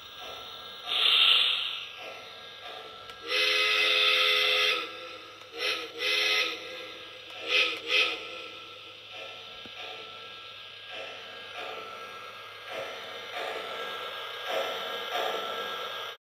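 Model steam locomotive's sound system blowing its steam whistle: one long blast about three seconds in, then several short toots, after a burst of steam hiss about a second in. Softer repeated running sounds follow through the rest.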